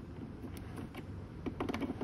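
A two-prong plastic plug clicking and scraping as it is fitted into a portable power station's AC outlet: a scatter of faint small clicks, more of them in the second half.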